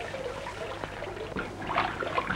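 Steady hiss and crackle over a low hum: the background noise of an old optical film soundtrack.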